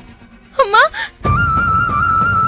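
A person wailing in short, pitch-bending crying sobs. Just over a second in, background music starts: a held, flute-like melody over a low drone.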